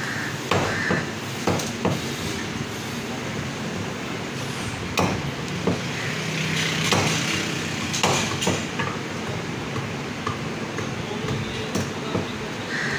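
Butcher's cleaver chopping mutton on a wooden stump chopping block: an irregular series of sharp chops, some in quick pairs.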